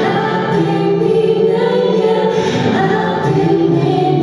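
Live acoustic music: a woman and a man singing together, with acoustic guitar and electric keyboard accompaniment.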